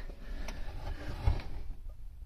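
Handling noise from the camera being moved in close: a faint rustle, one light click about half a second in, and a soft low bump just past a second in.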